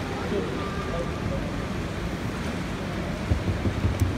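Steady low rumble and rushing water of a motor boat on the sea, with wind on the microphone; a few low thumps near the end.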